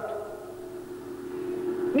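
A pause in a man's amplified speech, filled by a steady low hum that also runs under his voice, with his last word fading out right at the start.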